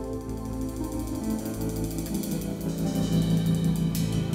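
Live band playing the start of a song on electric guitars, drums and keyboard, with a fast, even ticking on top. The sound fills out and gets a little louder a couple of seconds in.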